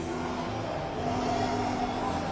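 Steady indoor background hum of an airport terminal, with a couple of faint held tones.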